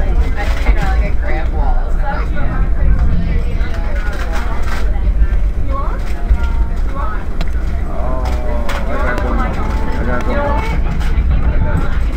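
Steady low rumble of a moving passenger vehicle, heard from inside the cabin, with voices talking over it.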